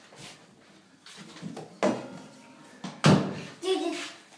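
Two sharp knocks about a second apart, the second the louder, with low rustling between them; a short voice sound follows near the end.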